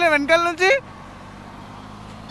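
A man's voice for under a second, then the steady running noise of a motorcycle under way, engine and wind together, heard from the rider's own camera.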